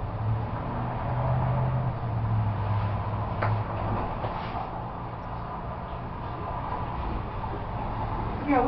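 A steady low hum with a rushing noise, swelling a little in the first few seconds, with a faint click about three and a half seconds in.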